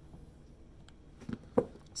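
Two short sharp knocks on a countertop, the second louder, as a silicone mold holding bars of soap is set down on stone, with quiet handling sounds around them.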